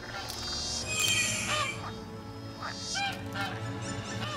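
Several short goose-like honking calls over orchestral film music, starting about one and a half seconds in.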